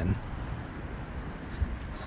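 Footsteps on a paved trail, with a steady rush of wind noise on the microphone and a few dull low thumps, the strongest about three-quarters of the way through.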